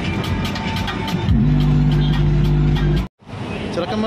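Music played loud through a car audio system with two Pioneer tube subwoofers: a fast ticking beat, then a long, heavy bass note from about a second in. The music cuts off suddenly about three seconds in, and voices follow.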